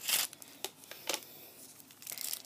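Handling sounds as wrapped plasters are taken out of a small box: a short rustle at the start, then a couple of light clicks.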